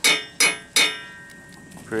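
Hammer blows on the arbor nut of a homemade sawmill's large steel circular saw blade. There are three sharp metallic strikes in the first second, each with a brief ringing from the blade, as the reverse-threaded nut is knocked loose to change the blade.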